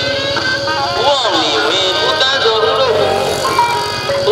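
Loud music with a gliding, wavering melody line over a quick steady beat.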